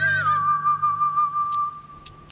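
A whistled note in a western-style music score over a low drone: the pitch bends up and back down at the start, then holds steady and fades away near the end.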